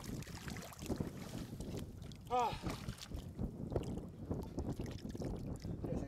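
Shallow seawater sloshing and splashing around wading boots and a plastic bucket as razorfish are dug for, in a run of small irregular splashes.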